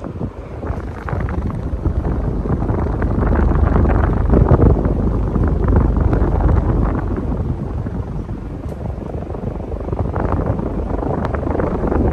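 1988 Casablanca Spirit of Saturn ceiling fan running, its blades' downdraft buffeting the microphone in a loud, low rush of air. The rush swells about a second in, peaks around four seconds, then eases and swells again near the end.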